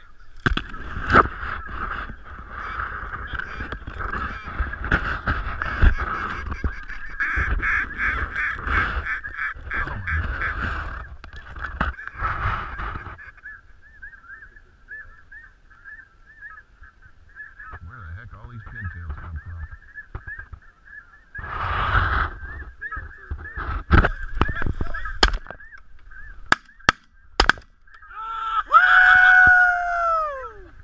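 A large flock of geese calling continuously overhead, a dense chorus of honks. It is joined by a few sharp cracks in the last several seconds.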